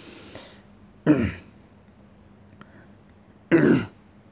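A person clearing their throat twice, two short gruff sounds about a second in and near the end.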